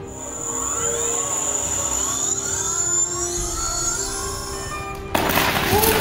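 A steady high tone and a rising whine over music, then about five seconds in a sudden loud crackling, hissing burst as the hoverboard prototype throws a shower of sparks and smoke.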